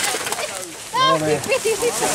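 People's voices calling out, starting about a second in, after a quieter first second.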